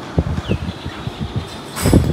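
Fabric pop-up play tent rustling and being pushed about as a child crawls out under its side on a hard floor. A run of irregular soft knocks and thumps, then a louder rush of rustling near the end.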